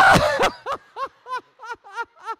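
A loud vocal outburst, then a person laughing in a steady string of short, high-pitched 'ha' bursts, about three a second.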